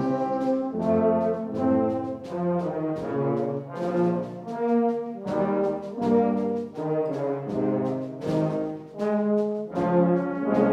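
Brass music: several brass instruments playing together in chords that change every half second or so.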